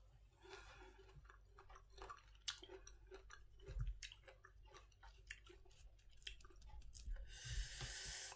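Close-up chewing of half-ripe mango with chili-salt: faint, irregular wet smacks and small crunches. A louder hissy noise comes near the end.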